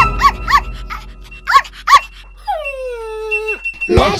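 Puppy sound effect: four short, high yips in the first two seconds, then one long whine that slides down in pitch.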